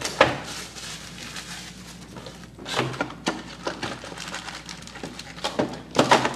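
A cardboard trading-card hobby box being opened by hand and its packs pulled out: scattered rustling and taps, with a sharp click about a quarter second in.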